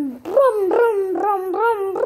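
A boy singing wordless hummed syllables, about three a second, each one bending up and down in pitch.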